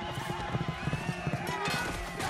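Cavalry horses in a battle mix: a dense run of hoofbeats, with horses whinnying and men shouting over it.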